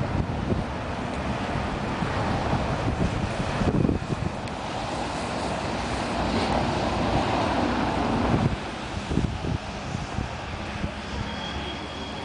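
Wind buffeting the microphone over a steady rumble of street traffic.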